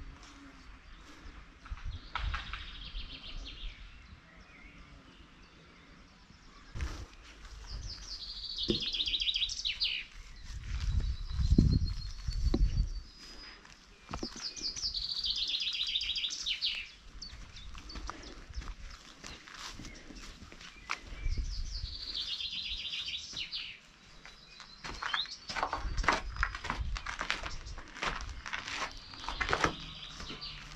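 A songbird singing the same short phrase three times, several seconds apart: a quick run of high notes falling in pitch, each about two seconds long. A low rumble on the microphone about midway is the loudest sound, and there are scattered soft knocks of footsteps through grass.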